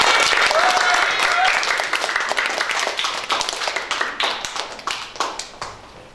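Audience applauding: many hands clapping, loudest at first, then thinning out and fading toward the end.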